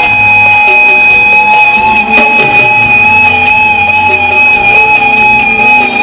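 Live rock band playing an instrumental passage on bass, guitar and drums, with one long high note held over the band.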